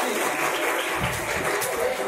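Onlookers clapping, with voices mixed in.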